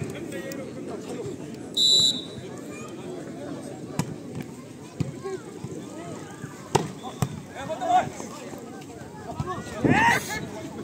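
Crowd chatter around an outdoor volleyball court, with a short, shrill referee's whistle about two seconds in, signalling the serve. Later come a few sharp smacks of the volleyball being hit, and voices rise near the end as the rally goes on.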